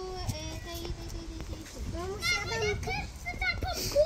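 Children's voices: one long held vowel, then a short run of chatter, over a low rumble of wind on the microphone.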